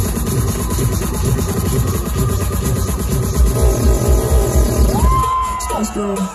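Loud electronic dance music from a live DJ set played over a festival sound system, with a fast, heavy bass beat. About five seconds in, a synth tone slides up and holds, and the bass thins out at the very end.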